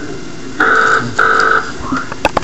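Electronic telephone ringing tone: two steady beeps of about half a second each, a short gap apart, the pattern repeating.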